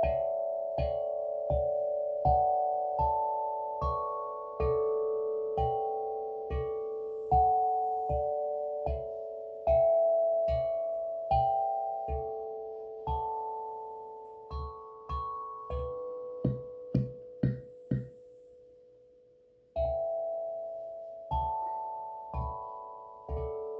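A 6-inch steel tongue drum in D major struck with a rubber mallet, one slow note at a time, each note ringing on and overlapping the next. About three quarters of the way through comes a quick run of four short notes, then a brief pause before the slow notes resume.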